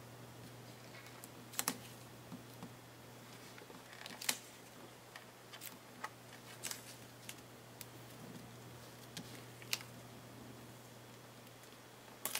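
Faint, irregular light taps and clicks of fingers and nails handling washi tape and pressing it down onto cardstock, over a steady low hum.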